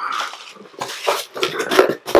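Bubble wrap and a cardboard shipping box being handled as the packing is pulled out, in a run of irregular rustles and crackles.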